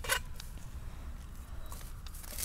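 A brief scraping rustle right at the start, with a few faint ticks after it, then a quiet low background rumble.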